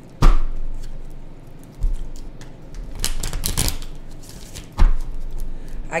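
A tarot card deck being split and handled: a sharp knock about a quarter second in, another knock near two seconds, a quick run of card clicks around three seconds and one more knock near five seconds.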